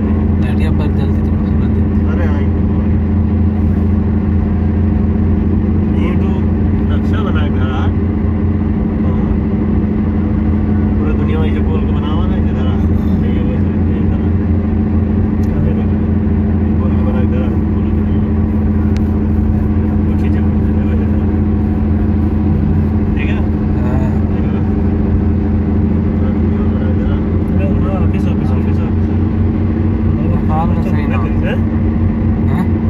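Steady drone of a car driving at a constant speed, heard from inside the cabin: engine and road noise, with faint voices now and then.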